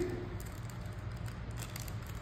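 Low steady room hum with faint scattered clicks and rustling from jewelry and small plastic bags handled on a glass counter.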